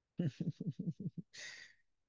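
A man laughing quietly in a quick run of short "ha" pulses, each dropping in pitch, ending in a breathy exhale about halfway through.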